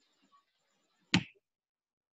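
A single sharp click about a second in, with a brief tail, over faint room hiss.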